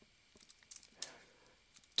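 A few faint, sharp clicks from a computer keyboard and mouse, the loudest about a second in.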